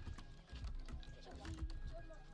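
Typing on a computer keyboard: an irregular run of key clicks, under quiet background music.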